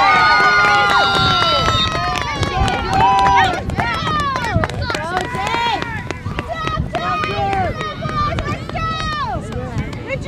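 Several voices shouting and calling out over one another across a soccer field, loudest in the first couple of seconds and again about three seconds in.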